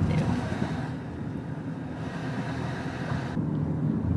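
Steady road and engine noise inside a moving car's cabin: a low rumble with a hiss over it. The hiss cuts off abruptly about three and a half seconds in.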